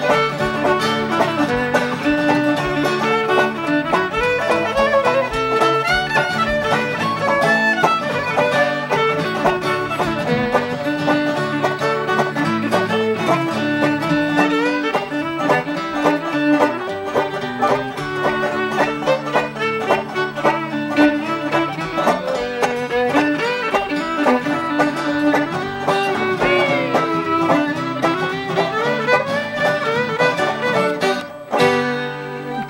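Old-time string band playing a fiddle tune in D: fiddle carrying the melody over banjo and acoustic guitar accompaniment.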